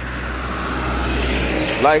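A car passing on the road: a low rumble with tyre hiss that slowly swells and drops away near the end.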